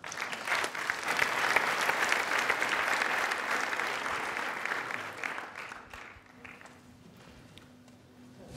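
Audience applauding, a dense patter of many hands that starts at once, holds for about four seconds and dies away by about six seconds in.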